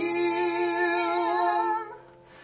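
A woman's voice holding one long sung note with a slight vibrato, which drops away just before the end.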